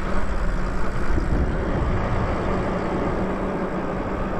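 Wind rushing over the microphone and tyre noise on asphalt from an e-bike riding along, with a faint steady low hum underneath.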